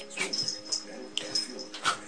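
A dog whimpering, a thin high whine lasting about a second, with a small click partway through.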